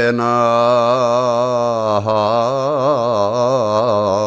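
A man singing a traditional Greek folk song from Macedonia, with no break in the line apart from a short catch about two seconds in. The line is held long and heavily ornamented, its pitch wavering constantly.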